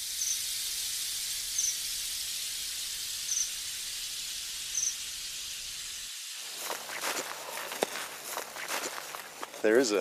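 Outdoor rural ambience: a steady high hiss with a short high chirp repeating about every second and a half. About six seconds in, the sound changes abruptly to a quieter background with faint voices.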